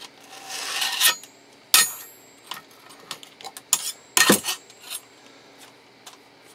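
Steel blades of a homemade claw glove scraping and clinking against a steel plate and against each other as the glove is moved: a scrape in the first second, then a handful of sharp metallic clinks, the loudest about four seconds in.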